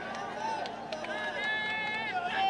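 Rally crowd of many voices filling the open-air ground between the speaker's lines, with one voice holding a long call near the end.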